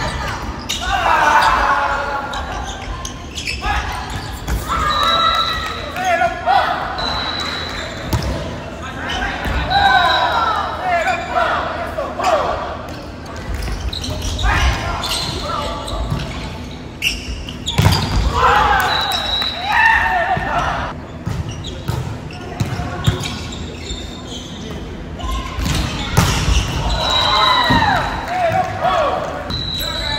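Indoor volleyball rally: players' shouted calls, sharp slaps of the ball being hit and landing, and short high squeaks of shoes on the wooden floor, all echoing in a large gym.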